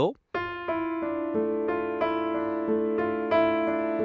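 Piano playing a slow four-note theme, F–E–D–A, in the low register over held notes. The notes ring on and overlap, with a new note about three times a second.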